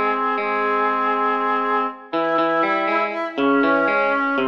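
Software score playback of a hymn arrangement for flute, oboe and electric guitar: held wind notes over guitar arpeggios. About two seconds in, the phrase ends with a short gap, and the next phrase begins.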